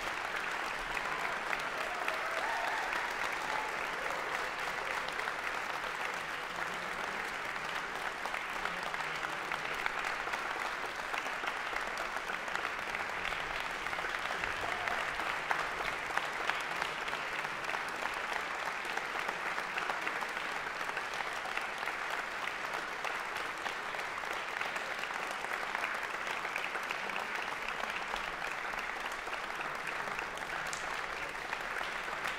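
A concert-hall audience applauding at the end of a performance, steady dense clapping with no let-up.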